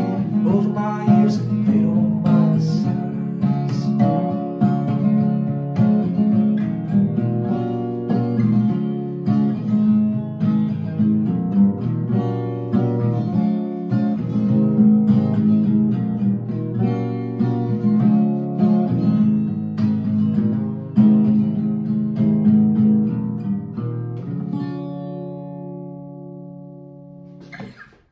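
Acoustic guitar with a capo strummed in a steady rhythm. About 24 seconds in, the strumming stops and a last chord is left ringing and fading out, and a short knock comes just before the end.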